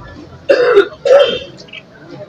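A man loudly clearing his throat twice, two short harsh bursts about half a second apart, over low crowd noise.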